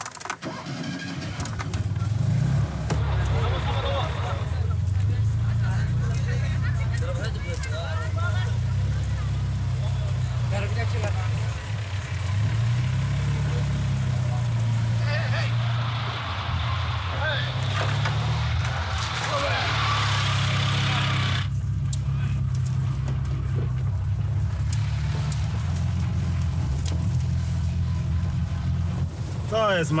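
Fiat 126p's small air-cooled two-cylinder engine labouring in deep mud, its pitch rising and falling as it is revved.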